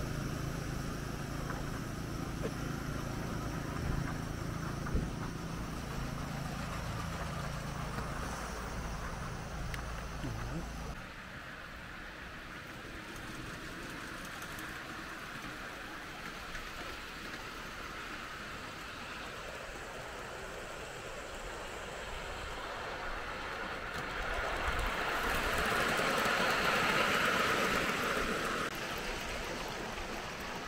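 A steady low hum for about the first ten seconds, then outdoor quiet that gives way to a miniature railway goods train running along the track. The train's running noise on the rails grows louder a little past twenty seconds in and eases off near the end.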